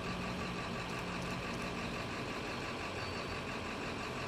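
Quiet, steady street ambience: vehicle engines idling with a faint low hum and a background of traffic noise.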